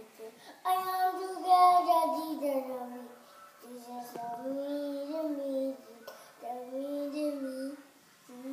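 A young child singing long held notes in three phrases, the first the loudest and gliding down in pitch.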